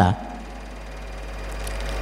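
A low, steady rumble that slowly grows louder over the pause, with faint room noise above it.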